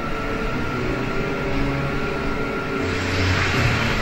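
Soundtrack of a film excerpt played back in a lecture room: music with a swell of rushing noise near the end.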